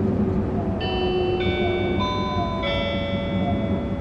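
Four-note chime from the Narita Express's onboard sound system, the notes entering one after another about half a second apart and ringing on together, over the steady rumble of the train running.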